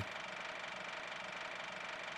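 Faint, steady hiss of background noise with a thin high steady tone in it and no distinct events.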